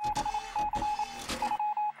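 Electronic sci-fi sound effect: a rapid stutter of short beeps at one pitch mixed with crackles of static, like a data transmission starting up. It breaks off briefly near the end.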